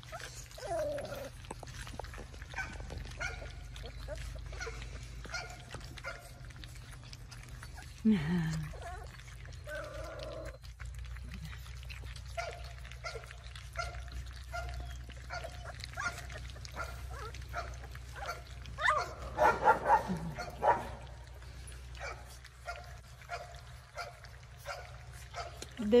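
Cane Corso puppies about four weeks old whimpering and yipping in short squeaks while they eat raw meat from a steel pan, with small wet smacking clicks throughout. A louder bout of yips comes about two-thirds of the way through.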